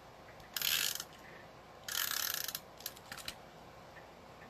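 Adhesive tape runner drawn across cardstock in two short passes, about half a second in and about two seconds in, each a dry rasp with fine ratcheting ticks, followed by a few light clicks.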